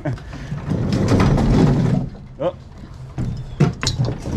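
Manual pallet jack rolling a loaded pallet across a box truck's floor: a loud rumble starting about a second in that lasts a little over a second, then a few sharp knocks near the end.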